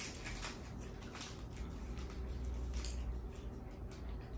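Faint wet chewing of a chewy candy, with small soft clicks and rustles scattered through it over a low steady room hum.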